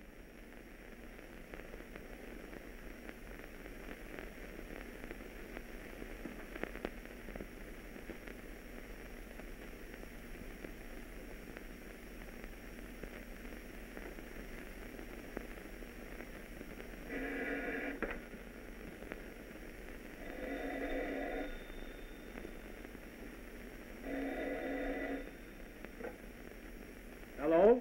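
Hiss and crackle of an old film soundtrack. In the last third a telephone rings three times, each ring about a second long with a pause of two to three seconds between rings.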